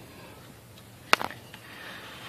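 A single sharp metal click about a second in, followed by a few lighter ticks, as the turbo and exhaust parts knock together while being worked into place.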